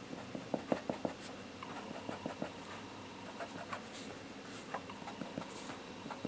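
Red Bic Mark-It marker tip scratching and ticking on paper in short, irregular strokes as the stripes of a drawing are coloured in.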